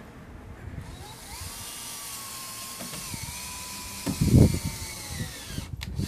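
Cordless drill running under load: its motor whine climbs in pitch about a second in, holds, dips slightly about three seconds in and winds down near the end, as it drives a fastener into composite decking. A few loud low thumps come about four seconds in.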